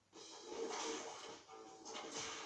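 Advert soundtrack music that starts abruptly just after a brief silence, carried by a steady held note, with a short dip about one and a half seconds in.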